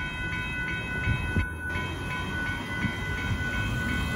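Railroad crossing bell ringing rapidly, about three strikes a second, as the crossing gates rise once the freight train has cleared, over a low rumble.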